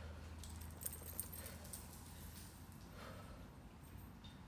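Light metallic jingling of a dog's collar tags as the dog moves close by, with two sharp clicks about a second in, over a steady low hum.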